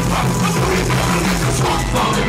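Live funk band playing a groove: drum kit, bass line and keyboards, loud and steady.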